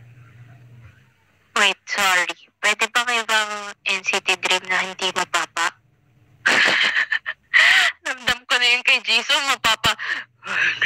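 A person's voice, loud and high, in short pitched phrases with wavering pitch, starting about one and a half seconds in. A low steady hum stops about a second in.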